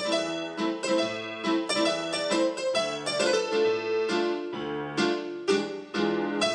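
Solo piano playing a busy tune of quick struck notes over low bass notes.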